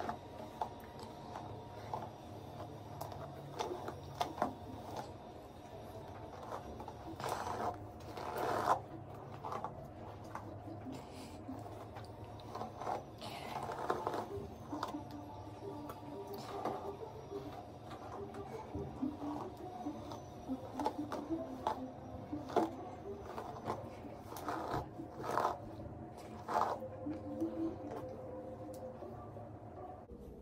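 A hairbrush being drawn through long, wavy hair in irregular strokes, each a short scratchy rustle.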